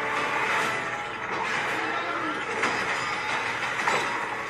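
Action-scene sound effects from a movie trailer playing back: a dense, steady mass of rumbling noise with two sharp hits, one about two and a half seconds in and one near the end.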